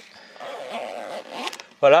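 Mesh mosquito screen in a van's sliding doorway being pulled closed by hand: a soft scraping rustle of the fabric lasting about a second.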